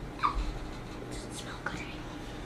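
Quiet room with a short soft vocal sound about a quarter second in, then faint whispering.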